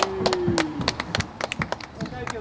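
A quick, uneven run of light clicks or taps, about eight a second, with a held low tone that slides down slightly and fades out within the first second.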